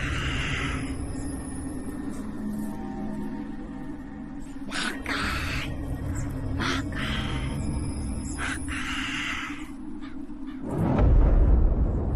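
Ominous film-score drone with bird calls repeating every couple of seconds over it, then a deep, loud low swell near the end.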